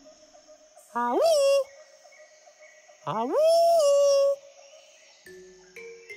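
Cartoon monkey's wordless voice: two hoots that slide sharply up in pitch and then hold, the second longer.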